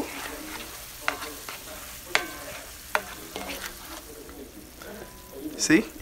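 Mushroom cream sauce sizzling and bubbling in a hot skillet while it is stirred, with a few sharp knocks of the utensil against the pan.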